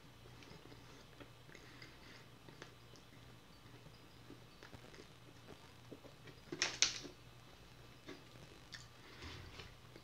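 Faint, wet chewing of a mouthful of food, with a short, louder sip through a drinking straw a little past halfway.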